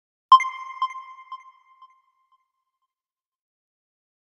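An edited-in electronic chime sound effect: one clear ping that repeats as a fading echo about twice a second and dies away by about two seconds in.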